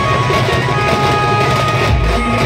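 Loud live band-party music through a large sound system: held melody notes with the heavy bass drum dropped out for a moment.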